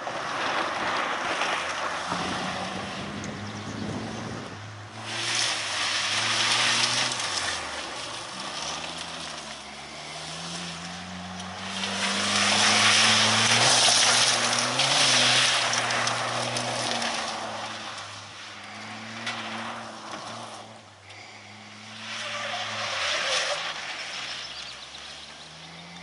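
Toyota Corolla hatchback race car driven hard on gravel: the engine revs rise and fall through the gears and corners. Gravel sprays and rattles from the tyres in loud bursts, loudest between about twelve and sixteen seconds in.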